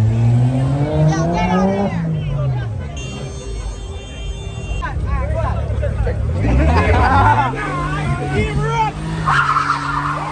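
Car engines revving hard as cars spin donuts, with tyres skidding. The revs climb steeply and drop about two seconds in, then climb again at about six seconds and hold high. A crowd shouts over it.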